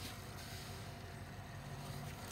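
Sand filter pump on an above-ground pool running with a steady, quiet low hum.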